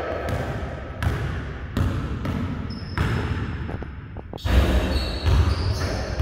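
A basketball dribbled on a wooden gym floor, bouncing about every three-quarters of a second. Heavier thumps come in the last second and a half.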